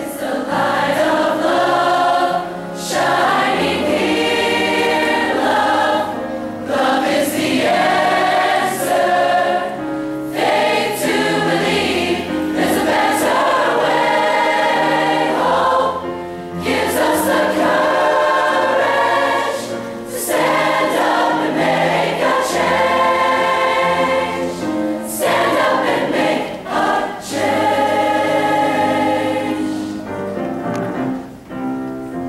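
Large mixed choir of men and women singing together with piano accompaniment, in phrases of a few seconds broken by short pauses.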